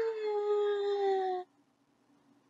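A woman's voice giving one long wail in imitation of a toddler's tantrum cry, its pitch sliding slowly down, cutting off about a second and a half in.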